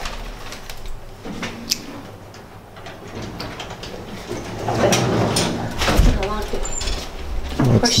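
Indistinct talking, louder in the second half, with a few sharp clicks and knocks earlier on.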